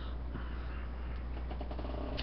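Steady low electrical hum with background hiss. A faint, brief tonal sound comes near the end.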